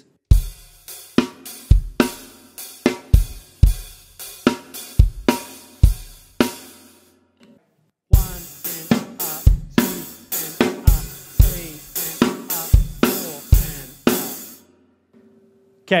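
Drum kit playing a rock beat of kick, snare and hi-hat with the crash cymbals left out, in two passages of about six seconds with a short break between.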